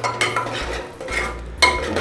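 Metal spatula stirring and scraping thick tomato-onion masala paste around a cooking pot, with the sharpest scrapes near the start and near the end.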